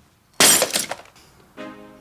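Glass shattering in one sudden loud crash about half a second in, dying away within about half a second.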